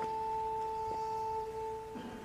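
Pipe organ holding two soft, pure flute-like notes an octave apart, released just before the end.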